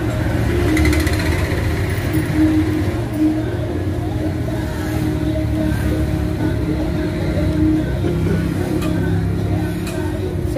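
Steady rumble of road traffic with engines running, with a wavering drone throughout.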